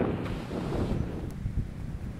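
Wind buffeting the camera's microphone in a breeze: a steady low rumble with no other clear sound.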